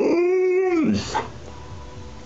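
Alaskan malamute "talking": one drawn-out vocal call lasting just under a second, held on one pitch and dropping at the end, the kind of vocalizing a malamute does when it wants to be let outside.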